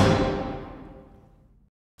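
Final chord of a sampled orchestral passage, with strings, brass and percussion from the Sonokinetic Grosso library, ringing out and fading away over about a second and a half, then cutting to silence.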